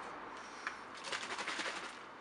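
Plastic drinks bottle holding caustic soda and water being handled and capped: a single click a little over half a second in, then a quick run of scratchy rattles lasting about a second.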